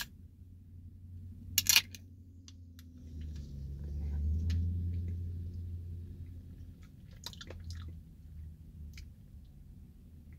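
An aluminium energy-drink can cracked open about a second and a half in, a short sharp pop and fizz. After it a low rumble swells and fades in the middle, with a few light handling clicks near the end.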